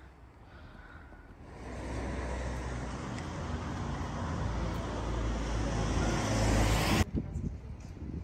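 Road traffic on a wet street: a vehicle's tyre hiss and low rumble swell steadily louder over several seconds, then cut off abruptly near the end.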